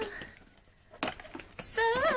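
Scissors cutting packing tape on a cardboard box: a click at the start, then a few short snips and clicks from about a second in. Near the end a woman starts singing a few notes.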